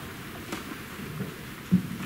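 Low room noise with scattered small knocks and shuffles, and one sharp thump near the end.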